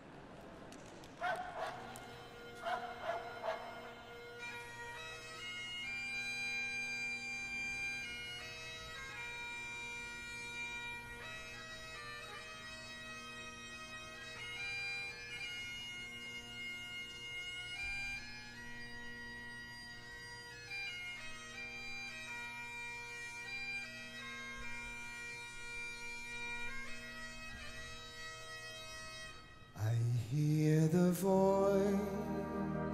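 Great Highland bagpipe played solo: the drones strike in about two seconds in, and a couple of seconds later the chanter takes up a slow melody over them and keeps it up. A dog barks a few times in the first few seconds, as the drones come in.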